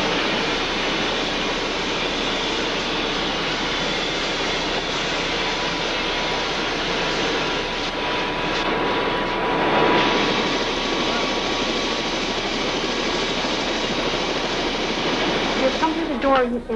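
Steady engine and rotor noise inside the cabin of an air-rescue helicopter in flight, with a faint steady whine; it swells briefly about ten seconds in.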